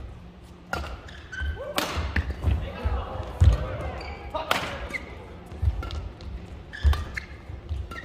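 Badminton singles rally: sharp racket-on-shuttlecock hits every second or two, echoing in a large hall, with short squeaks of court shoes on the mat and low thuds of the players' footwork.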